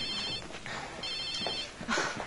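Mobile phone ringtone: two short, high electronic trills about a second apart.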